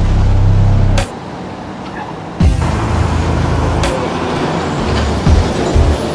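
City street traffic: a bus or other heavy vehicle's engine rumbling close by, under background music. The rumble cuts in and out abruptly a couple of times.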